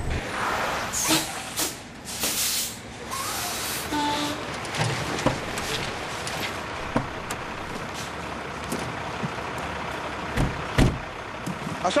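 A semi-trailer truck rolling on a dirt road and coming to a stop, its engine running under several sharp air-brake hisses in the first three seconds. Two knocks follow about ten seconds in.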